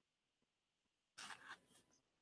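Near silence broken about a second in by a brief rustling scrape lasting under a second.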